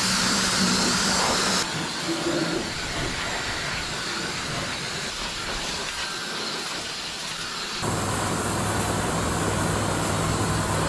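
Pressure washer spraying water onto a muddy skid steer: a continuous hissing spray. The sound changes abruptly about two seconds in, and a low steady hum comes in near the end.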